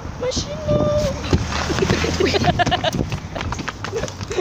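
A person's voice calls out on one held note, followed by a run of rapid rattling clicks and knocks mixed with short bursts of voices.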